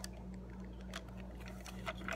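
A few faint, sharp plastic clicks as a pry tool levers the small end spindle off a Dyson V6 power head, with a steady low hum underneath.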